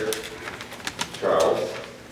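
A man's voice at the lectern microphone speaking in slow, drawn-out syllables, one trailing off early and another about a second in.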